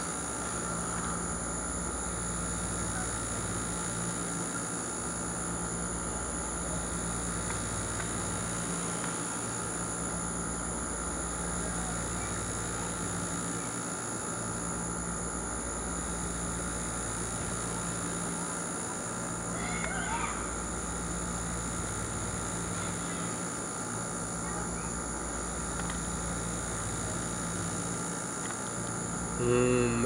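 Steady background hum with several constant tones, one of them high-pitched, unchanging throughout, and a brief faint sound about twenty seconds in.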